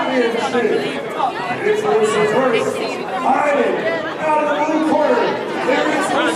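Crowd chatter: several people talking over one another at once, with excited, overlapping voices and no single clear speaker.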